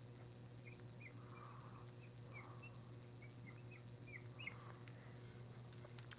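Faint squeaks of a marker tip on a glass lightboard while a word is written: a dozen or so short chirps spread over a few seconds, over a steady low hum.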